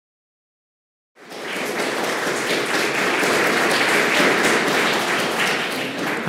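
Audience applauding; it starts abruptly about a second in and holds steady.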